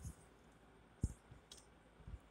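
A single faint click about a second in, followed by a fainter tick about half a second later, over quiet room tone.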